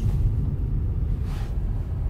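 Steady low engine and tyre rumble inside a moving Opel car's cabin, with the driver on the throttle.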